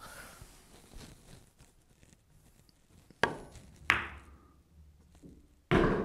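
A pool cue tip clicks against the cue ball about three seconds in, the cue ball clicks into the nine ball a moment later, and near the end the nine drops into the corner pocket with a louder, deeper knock. It is a slow, rolled pot of the nine ball.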